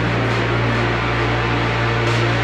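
Instrumental electronic trance music: a long-held low bass note under a thick, hissing wash of synth pads and noise.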